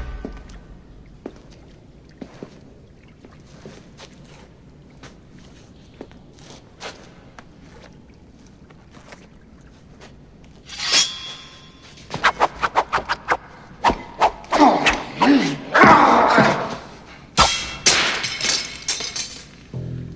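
Steel sword blades clashing and scraping in a quick run of sharp clangs, starting about halfway through after a quiet stretch of faint taps.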